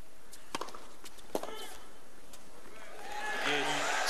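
Tennis ball struck by rackets: two sharp hits under a second apart, the second followed by a short grunt. Near the end crowd noise swells and a commentator starts speaking.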